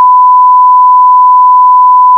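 Censor bleep: one long, loud, steady pure-tone beep laid over swearing in a recorded phone argument.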